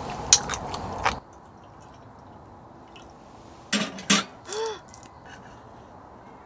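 Close-up chewing and eating sounds, crisp clicks and mouth noises, for about the first second, then cut off suddenly to quiet outdoor ambience. Near the middle come two short sharp sounds and a brief call that rises and falls in pitch.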